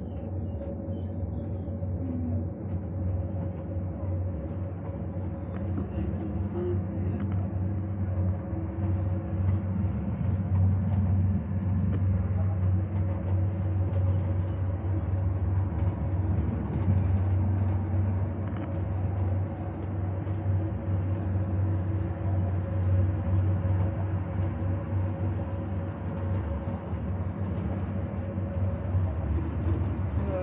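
Steady low hum and rumble inside a Cologne Rhine cable car gondola as it travels along its cable, with a thin steady whine over it.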